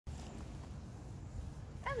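A dog gives one short, high whine or yelp near the end, falling in pitch, over a low steady background rumble.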